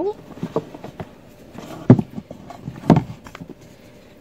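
Handling of a rigid perfume presentation box as it is opened by hand: a few separate knocks and taps, the loudest about two seconds in and another about a second later.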